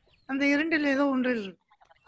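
A man's voice holding one long, wavering vowel for just over a second.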